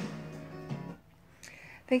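Final guitar chord of the song, struck once and ringing out, fading away within about a second. A woman's voice starts speaking right at the end.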